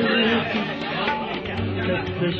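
Several people's voices chattering and calling out in a concert hall, over the ghazal's instrumental accompaniment continuing softly underneath.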